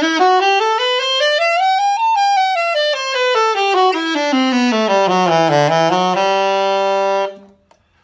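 Alto saxophone playing an E major scale in quick, even notes: it climbs to the top of the horn's range, runs down to its lowest notes, then comes back up and ends on a held note. It is a scale exercise that works through every fingering of the key across the instrument's range.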